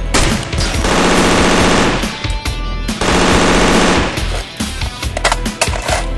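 Automatic gunfire: two long bursts of rapid fire, about a second each, starting about a second in and about three seconds in, with scattered single shots around them.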